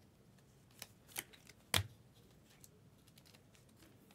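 Trading cards being handled and slipped into a plastic sleeve: a few short clicks and snaps of card stock and plastic, the loudest with a soft thump just under two seconds in.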